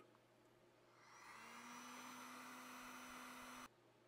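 Faint steady whir of a heat gun's fan motor shrinking heat-shrink tubing over a crimped wire connection. It starts about a second in and cuts off suddenly near the end.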